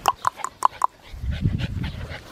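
Ten-week-old Australian Shepherd puppy whimpering: about five short, high squeaks in quick succession in the first second. This is followed by a low rumbling rustle close to the microphone.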